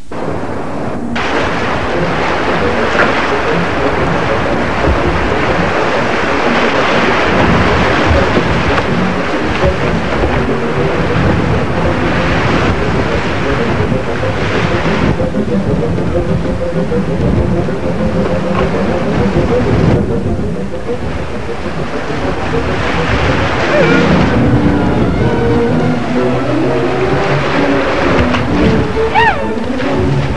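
Rushing whitewater of a river rapid, with wind and rumble on the camcorder microphone as the canoe runs it: a loud, steady noise that eases a little about two-thirds through and swells again near the end.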